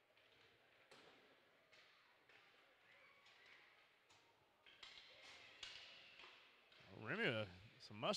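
Faint ice-rink sound of youth hockey play: a few sharp, scattered taps of sticks and puck over a low arena background. A brief voice is heard about seven seconds in.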